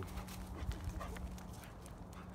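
Steps crunching on frosted grass and gravel: a quick, irregular run of small crisp clicks.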